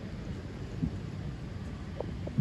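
Steady low rumble of auditorium background noise, with one short low thump a little before the middle.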